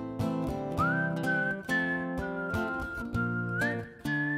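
A man whistling a slow melody over strummed acoustic guitar chords. The whistle slides up to a held high note about a second in, drops a step around the middle and slides up again near the end.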